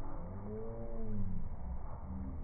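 A dog whining: one long drawn-out call that rises and falls in pitch over about a second, with another starting near the end, over a low steady rumble.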